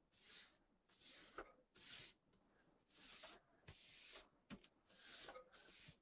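Faint, repeated swishes of a hand smoothing release paper over a printed T-shirt, about seven strokes pressing the fabric fuzz back down onto the print.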